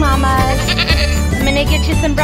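Background music with a steady bass line, and a goat bleating over it with a quick wavering bleat about a second in.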